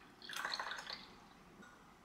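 Milk poured from a plastic measuring jug into a porcelain cup, splashing for about a second.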